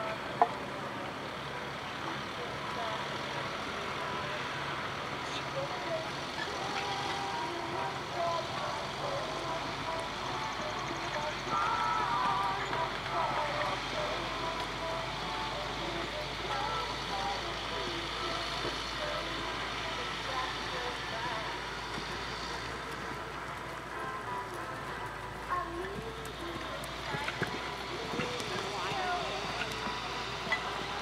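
Faint distant voices over a steady outdoor background hum, with one sharp knock about half a second in.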